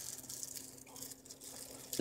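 Faint, irregular rustling and crinkling of thin plastic wrap as a wrapped lime is handled, over a low steady hum.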